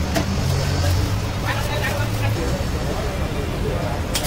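Busy street-stall ambience: a steady low rumble with background voices, and a few light clicks and knocks.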